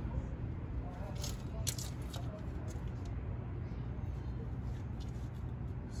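Hands crumbling and pulling soil away from a young maple seedling's roots: soft rustling and a few crackles, clustered between about one and two seconds in, over a steady low background hum.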